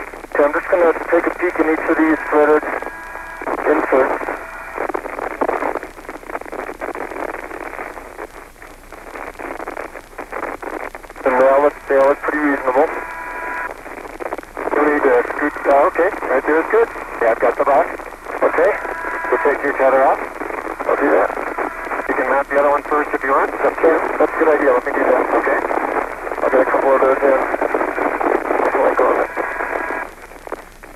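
Voices talking over a narrow-band space-to-ground radio link, with hiss: spacewalk radio chatter from the astronauts.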